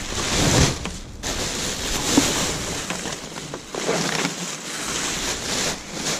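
Black plastic rubbish bags rustling and crinkling as gloved hands grab, pull and rummage through them in a plastic wheelie bin, in several bouts with brief pauses.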